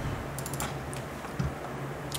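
A few light, scattered clicks from a computer keyboard and mouse as the video is called up, over a low steady hum.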